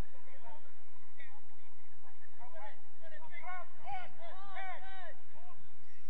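Distant shouts from footballers on the pitch: a run of short, rising-and-falling calls, faint at first and clearer from about halfway through.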